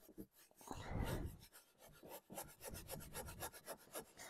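A brush's bristles rubbing quickly back and forth over gold leaf on a painted wooden surface, a faint rapid scratching, as the loose leaf is brushed off to reveal the stenciled design where the adhesive held it. A brief dull low thud about a second in.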